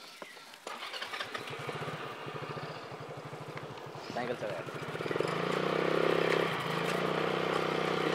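Motorcycle engine running with a fast, even beat, growing louder and steadier about five seconds in.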